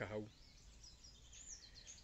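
Faint wild birdsong: a few high chirps in the second half, over a quiet outdoor background.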